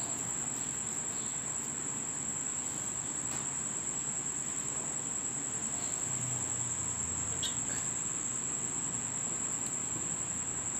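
A steady, unbroken high-pitched insect trill, with a single soft click about seven and a half seconds in.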